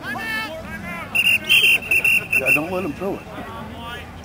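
A referee's whistle blown in a string of short, shrill blasts starting about a second in and lasting about a second and a half. Spectators' voices are heard before and after it.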